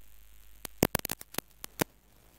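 A quick, irregular run of about eight sharp clicks over roughly a second, starting about halfway in, over a faint steady background.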